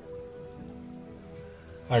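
Soft background music of sustained held notes, with faint scratching of a pen writing on paper.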